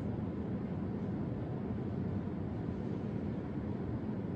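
Steady low rumble of room noise, even throughout, with no distinct sounds.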